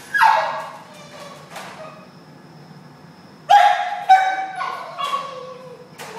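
A Basenji dog crying in her crate: a loud high cry falling in pitch right at the start, then, after a quieter stretch, a run of several falling howling cries from about three and a half seconds in.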